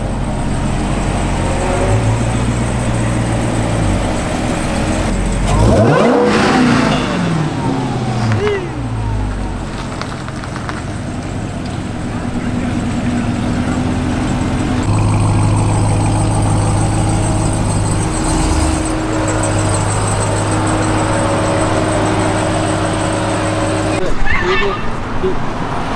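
Dodge Challenger SRT's V8 engine idling, revved once about five seconds in: the pitch climbs and falls back over about three seconds, then it settles to a steady idle.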